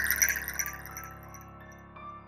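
Rapid chittering clicks, a movie-style spider sound effect, loudest at the start and fading out within about a second, over a low sustained music drone.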